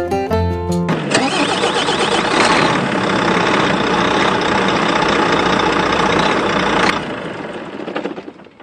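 Blue Mercedes-Benz truck's engine running loudly for about six seconds, starting abruptly as guitar music ends about a second in, then cutting off sharply and fading out.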